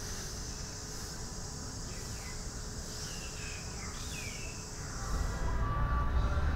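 Steady high-pitched drone of insects, with a few short falling chirps in the middle. About five seconds in, the drone fades and a low rumble takes over.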